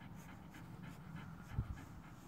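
Young German shepherd panting softly with its mouth open. A brief low thump sounds about one and a half seconds in.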